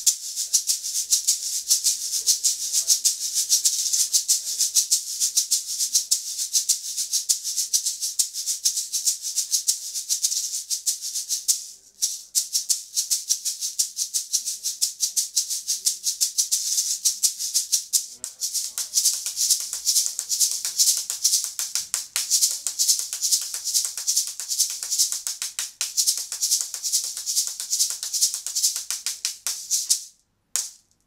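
Pearl Hex Ganza Large, a long metal-bodied shaker (PGA-32), shaken in a steady fast rhythmic pattern, a bright high rattle of its filling. It stops briefly about twelve seconds in, then carries on with a short dip a few seconds later.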